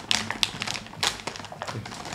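Irregular crinkles and sharp clicks of a snack's plastic wrapper being handled and opened.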